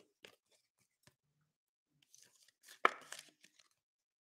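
Trading card being slipped into a clear plastic card holder: a few faint clicks, then a short burst of plastic rustling with a sharp click about three seconds in.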